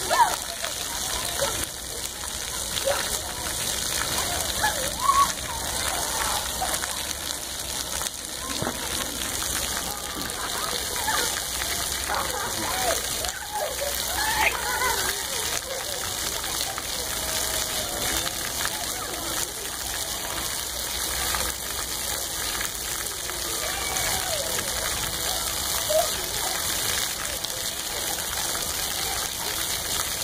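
Splash-pad fountain jets spraying and pattering down onto wet rubber ground, a steady rain-like hiss, with children's voices and shouts in the background.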